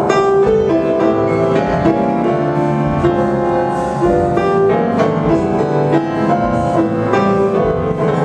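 Live jazz piano trio playing: a grand piano carries a stepping melody over a plucked upright double bass, with light drum kit accompaniment.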